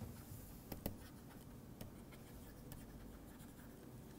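Faint taps and scratches of a stylus writing on a tablet screen, a few light ticks spread over a low steady room hum.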